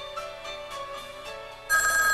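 Soft background music, then about three-quarters of the way through a telephone starts ringing, a steady trilling ring much louder than the music.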